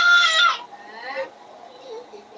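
A toddler crying: a loud, high wail that breaks off about half a second in, followed by a quieter, shorter wail that dies away before the halfway point.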